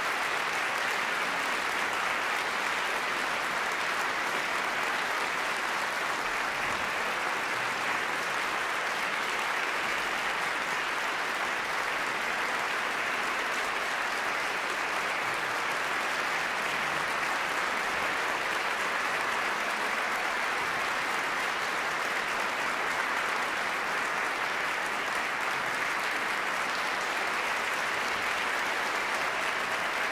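An audience applauding steadily in a concert hall.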